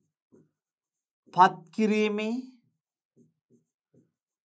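A man's voice speaking one short phrase in Sinhala in the middle, with a few faint ticks in the quiet around it.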